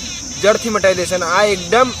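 Steady high-pitched drone of insects, heard under a voice speaking.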